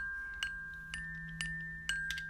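Soundtrack music: single high chime or glockenspiel-like notes struck about twice a second, each ringing on over a soft steady low drone.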